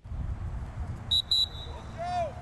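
Coach's pea whistle blown in two short, shrill blasts about a second in, the second trailing off, over a steady low outdoor rumble.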